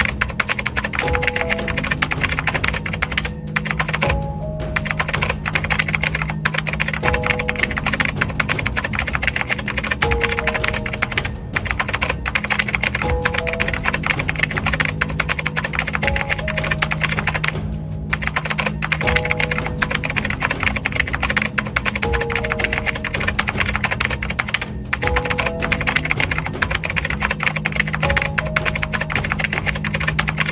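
Rapid computer-keyboard typing, clicking almost without a break and pausing briefly about four times, over background music: a low steady drone and a repeating figure of short notes.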